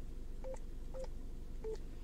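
Yaesu FTM-100DR radio giving three short key-press beeps about half a second apart as the frequency 144.390 is keyed in digit by digit; the last beep is a little lower.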